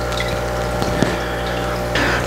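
Aquarium internal filter running in a newly filled tank, its pump humming steadily under a churning, bubbling water sound.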